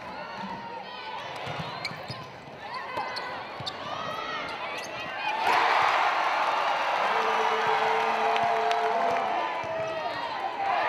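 In-arena sound of a basketball game: voices calling out over sneaker squeaks and the ball bouncing on the hardwood. About five and a half seconds in, the crowd noise swells suddenly and stays loud, with a steady held note under it for a couple of seconds.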